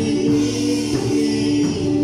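Live worship music: singing accompanied by guitar, in steady sustained chords.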